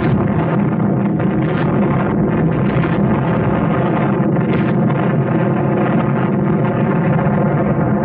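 Soundtrack of an archival nuclear-test film: dense, steady music-like sound with sustained low tones and no treble, heavy at the low end. It starts and stops abruptly and has no single blast onset.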